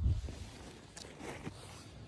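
A thump, then a few faint crunching footsteps on snow-covered rocky ground.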